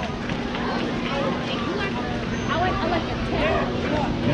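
Several people talking and calling out at once, overlapping and indistinct, over a steady low hum.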